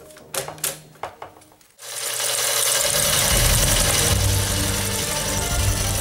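A few light clicks and knocks from a film reel being handled on a vintage film projector. About two seconds in, a loud rushing noise with a deep rumble starts suddenly and holds steady: a swirling vortex sound effect.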